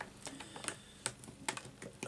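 Loose puzzle pieces being shifted and pushed back into place in their board by hand: a handful of light, irregular clicks and taps.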